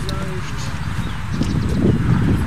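Faint, indistinct voices over a steady low background rumble.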